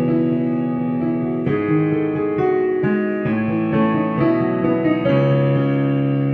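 Digital piano (E-piano) played with both hands: sustained chords over held bass notes, with new chords struck every second or so and the notes ringing on.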